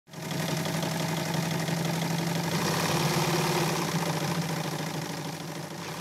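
1958 Gritzner sewing machine running at a steady speed, its needle stitching in a fast, even rhythm over its motor hum.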